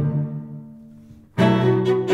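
Cello-rock instrumental: a low bowed cello note dies away over about a second, then the cellos cut back in suddenly and loudly with a rhythmic passage.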